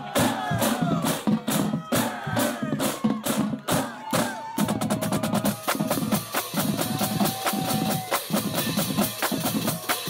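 Marching drum line playing a fast cadence on snare, tenor and bass drums. The strokes become faster and denser about halfway through.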